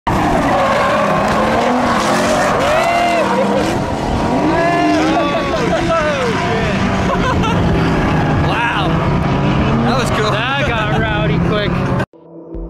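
Drift cars' engines revving and their tires squealing through slides, with people talking over it. The sound cuts off suddenly at the end.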